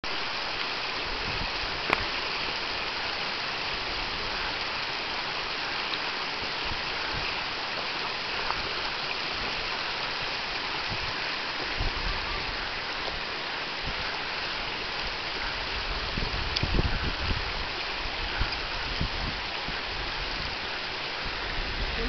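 Shallow rocky stream running over stones and a small cascade: a steady rush of water. A sharp click comes about two seconds in, and a few low bumps come near the middle and toward the end.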